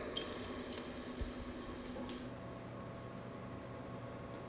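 Quiet room tone with a few faint clicks in the first second, a soft low thump about a second in, and then a steady faint hum.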